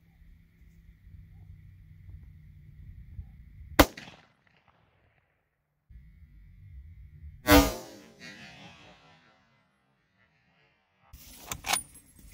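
Mossberg Patriot bolt-action rifle in .270 Winchester fired twice: a sharp crack about four seconds in, and another about three and a half seconds later with a longer echoing tail.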